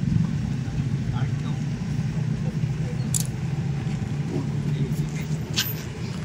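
Outdoor ambience: a steady low rumble that eases a little near the end, with faint voices in the background.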